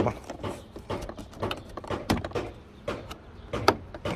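Plastic door trim panel of a 2007–2010 Hyundai Elantra being tugged at, creaking and clicking irregularly with a few sharper knocks, the strongest near the end. The panel's retaining clips hold and it does not come free.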